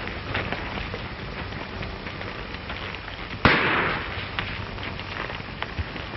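A single rifle shot about three and a half seconds in, a sharp crack that dies away over about half a second. Under it run the steady hiss and scattered crackle of an old film soundtrack.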